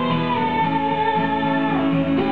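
Live acoustic guitar playing a song passage, with notes ringing on at a steady level.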